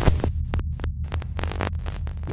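Electronic glitch-style outro sound design: a steady deep bass hum with rapid glitchy clicks and crackles over it.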